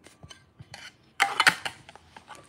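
Hands handling a tablet and plugging in its white charging cable: scattered light clicks and knocks, with a louder clatter about a second and a quarter in.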